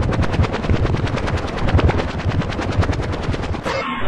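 Rapid automatic gunfire, an even run of about a dozen shots a second that stops shortly before the end.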